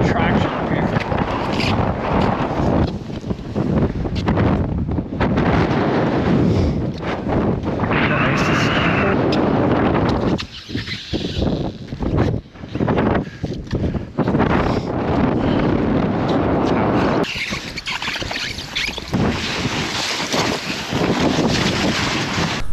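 Loud rushing wind noise on the microphone, broken by a few short dropouts, while sliding down glacier ice.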